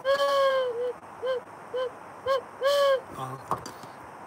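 Wooden duck call blown by mouth: one long note, three short notes about half a second apart, then another long note, each at about the same mid pitch and dipping slightly at its end.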